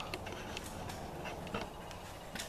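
Low, steady background noise with a few faint, light clicks scattered through it.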